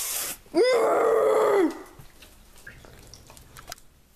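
A single drawn-out vocal cry or groan, about a second long, rising quickly, holding one pitch and then dropping off, just after a brief hiss; a few faint clicks follow.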